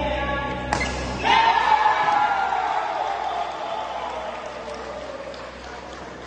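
A sharp crack, then several people's voices in one long drawn-out cry that slowly falls in pitch and fades away.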